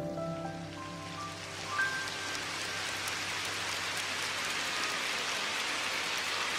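Steady rain sound, an even hiss with faint patter of drops, closing out a song. A few last high notes of the music ring out and fade in the first two seconds.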